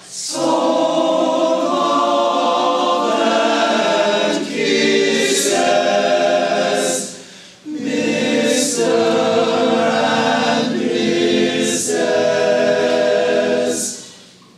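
Men's chorus singing sustained chords in two long phrases, with a brief break about halfway through; the singing stops near the end.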